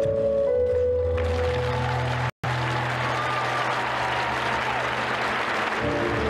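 Skating program music with sustained notes. From about a second in, an arena crowd applauds over it until near the end, with a brief cut to silence a little over two seconds in.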